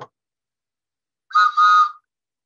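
Taxi cab whistle blown in two short, loud, shrill blasts close together near the end, with a wavering tone.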